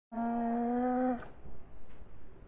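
Black-and-white cat's angry yowl slowed to quarter speed, so it sounds deep and drawn out: one steady held note lasting about a second, breaking off into low rustling.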